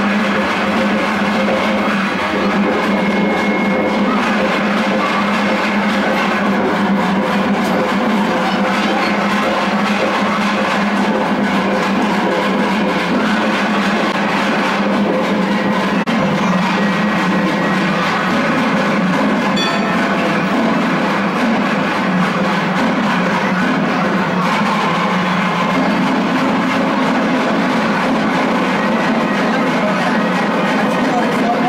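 Loud, continuous music with drums, running without a break.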